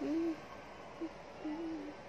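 A woman's voice: a short laugh at the start, a tiny sound about a second in, and a longer single-pitched vocal sound near the end.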